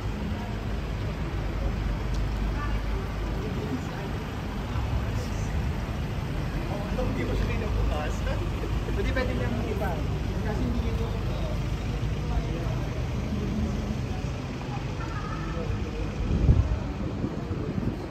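Street traffic: a steady low rumble of idling and passing cars and taxis, with passers-by talking in the middle and a brief low thump near the end.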